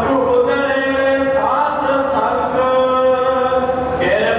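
A man chanting a devotional hymn in long, drawn-out notes, the pitch sliding up and back down about one and a half seconds in and again near the end.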